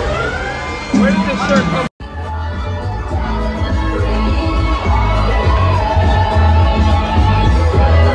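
Loud nightclub music with heavy bass and a crowd's voices and cheers. The sound cuts out completely for a moment about two seconds in, then comes back with the bass stronger.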